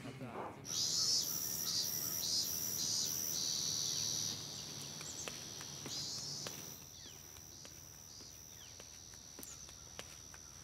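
Outdoor insect ambience: a steady high-pitched insect drone with a pulsing chirp over it for the first few seconds. It drops in level after about four seconds and again near seven seconds, with a few faint bird chirps.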